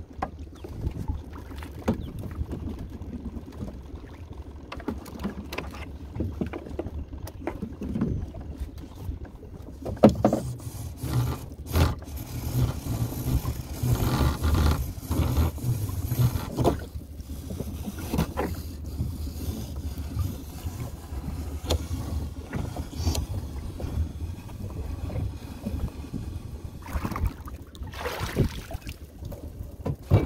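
Small boat working slowly along a crab trotline, the line running up over a side-mounted roller: water splashing and lapping at the hull, with scattered knocks and a low steady rumble underneath, busier and louder in the middle.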